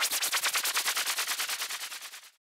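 Electronic FX sample from the Groovepad app's Psy-Trance pack: a rapid stutter of noisy clicks, about ten a second, fading out near the end.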